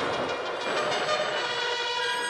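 Several harmonicas playing full, sustained chords together.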